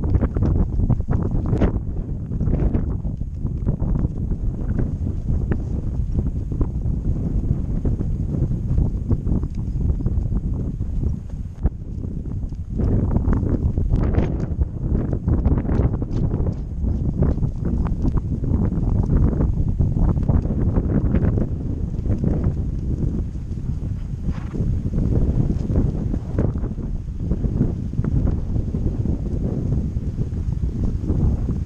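Wind buffeting a GoPro's microphone, heavy and rumbling throughout, with the hoofbeats of a horse being ridden along a grassy track.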